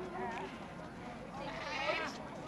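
People's voices in a street, with one high, wavering voice about one and a half seconds in.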